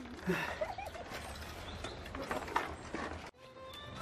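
Metal chains of a playground swing clinking and creaking irregularly as the swing goes back and forth.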